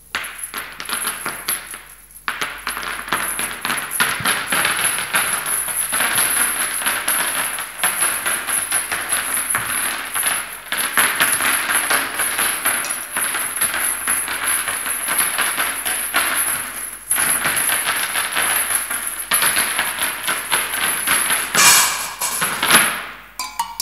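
Dense, rapid metallic clattering and jingling of small metal percussion objects (tin cans, steel cups, small cymbals and bowls) played by hand in improvised experimental percussion. It starts about two seconds in and goes on almost without a break, with one short pause about three-quarters of the way through.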